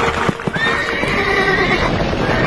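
Horses galloping, hoofbeats drumming under a long, high whinny that starts about half a second in and holds almost to the end.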